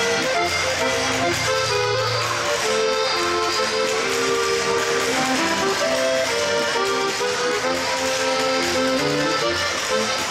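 Bavarian folk dance music playing a lively melody, with the quick rhythmic clacking of spoons played by the seated dancers.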